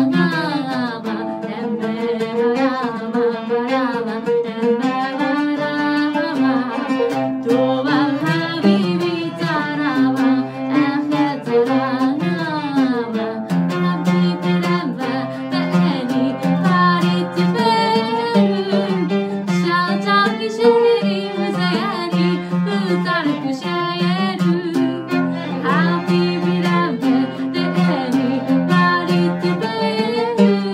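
A woman singing with oud and violin accompaniment: plucked oud notes under a gliding, bowed violin and vocal melody.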